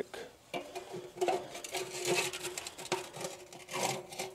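Metal scraper tool scraping and clicking against the steel floor of a Breeo fire pit in many short strokes, scooping out clumped oil-dry absorbent and wet ash.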